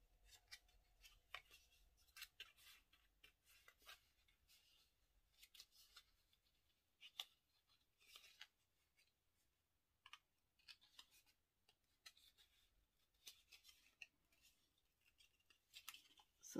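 Faint, scattered rustles and short crisp clicks of thin white cardstock being folded and creased by hand.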